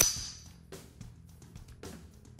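A sharp metallic snap from the Browning Buck Mark .22 pistol's slide as it is worked by hand, heard once at the very start with a brief ringing tail. Background music with a steady beat plays under it.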